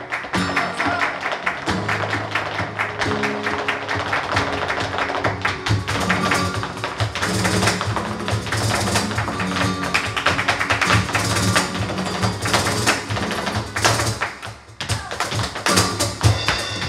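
Live flamenco with dancers' stamping footwork and hand-clapping over guitar and drums, in a fast, dense rhythm. It breaks off briefly near the end and closes on a strong accent.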